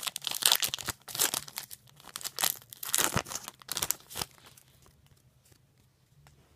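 Trading-card pack wrapper being torn open and crinkled: a dense run of sharp crackles that stops about four seconds in.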